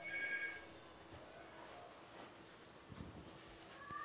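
A bell-like ring made of several steady high pitches, stopping about half a second in, followed by a faint low steady hum.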